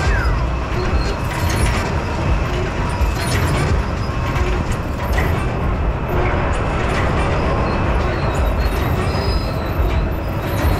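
Steady low rumble of a running carousel, heard from on board the moving ride.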